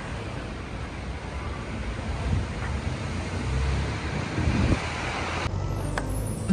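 Steady street traffic noise with a low wind rumble on the microphone.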